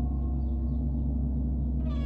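A large gong's low, steady hum sounds under a short gap in the violin, with only faint high wisps above it. A new bowed violin note comes in near the end.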